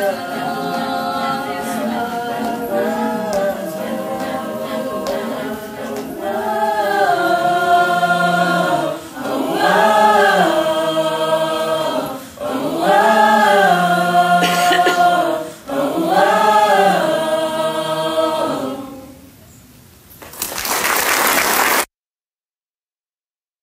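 A choir singing a repeated wordless phrase that rises and falls, each phrase about three seconds long. It ends, and after a short pause near the end, applause starts and is cut off abruptly.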